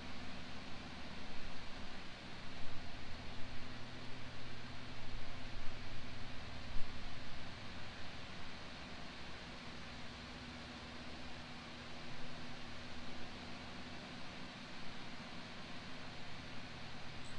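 Steady background noise with a low hum, and a low rumble that rises and falls, louder in the first half; no speech.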